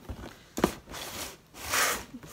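Large, empty cardboard box being picked up and handled: a knock about halfway through, then a louder scraping rub of cardboard near the end.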